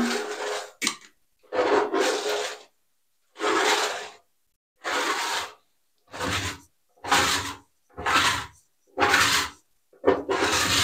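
A hand scraper dragged across an enamel bathtub, scraping off old epoxy refinish that paint stripper has softened and bubbled up. There are about eight short scraping strokes, each under a second, with gaps between.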